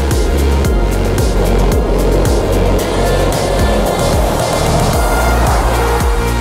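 Electronic background music with a steady bass beat. A noisy whooshing swell builds through the middle and drops away near the end.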